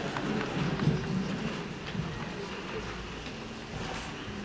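Low voices talking quietly, with a few scattered small clicks and knocks; no music is playing yet.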